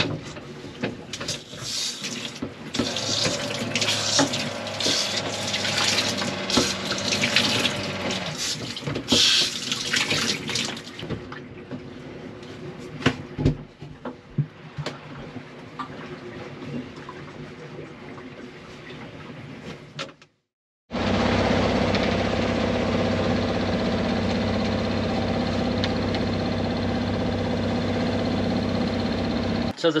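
Water running and splashing as hair is rinsed in a sailboat's small head, strongest for the first ten seconds, then quieter clicks and knocks. After a short break about twenty seconds in, a steady mechanical hum with several even tones takes over.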